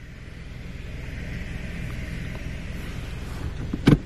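Steady hiss of water jets spraying from a touchless car wash gantry into an empty bay, over the low hum of a car idling.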